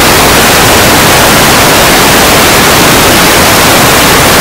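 Loud, steady static hiss like white noise, spread evenly from low to high pitch and drowning out everything else: an audio glitch in the livestream feed.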